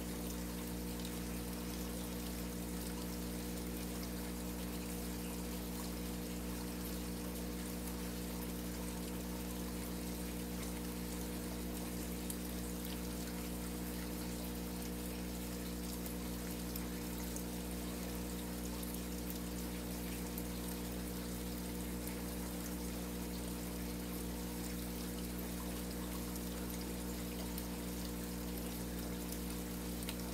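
Aquarium filter running: water steadily splashing and trickling into the tank over a constant low motor hum.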